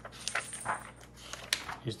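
A few short, light clicks and taps scattered through a quiet pause.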